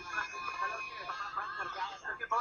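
A person's voice from an FM radio show recording, with a faint steady tone underneath.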